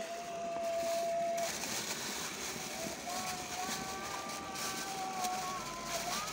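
A steady motor-like hum that drops out about a second and a half in and returns, slightly higher, about three seconds in. Under it is the rustle of a plastic bag being handled.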